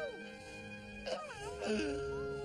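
Two newly hatched baby creatures give high, squeaky, wailing calls that glide up and down, about halfway through, over soft background music with held notes.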